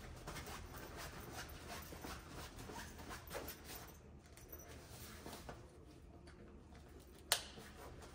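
Faint rustling and handling noise of a fabric bug screen being rolled up by hand, over a steady low hum, with one sharp click near the end.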